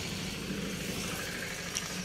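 Steady low background rumble with a faint hum, with no distinct events.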